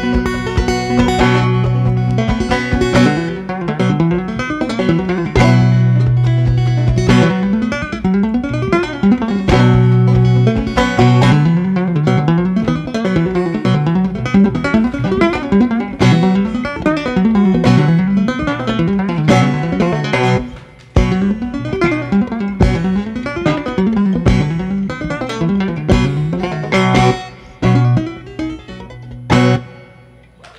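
Fender five-string banjo played clawhammer style: a quick run of plucked notes, with a few sharp percussive hits in the last fifteen seconds, the tune ending right at the close.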